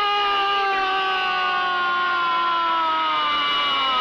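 A man's single long drawn-out shout, held on one note that slowly sinks in pitch, an exultant cry.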